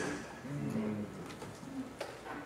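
A faint, low, wavering hum or murmur from a person's voice in a reverberant hall, lasting under a second, about half a second in.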